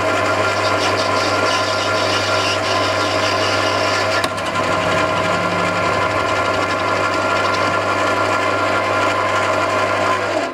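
Small hobby lathe running at a steady speed, its tool bit cutting into a spinning brass laser-pointer cap, with a steady motor hum and whine throughout and a small click about four seconds in.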